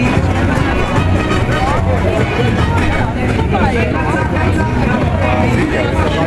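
Party music with a steady, pulsing bass line, under the loud chatter of a dense crowd of voices.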